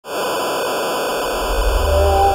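TV static sound effect: a steady hiss of white noise that starts abruptly. A low rumble swells in underneath near the end.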